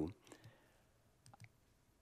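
Near silence in a pause in a man's talk, with a few faint, brief clicks.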